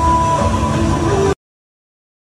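Loud low rumbling set noise with faint steady tones like music underneath, cutting off suddenly about a second and a half in, followed by dead silence.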